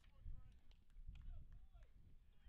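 Faint, distant voices of players and spectators at a ballfield, heard under a low rumble.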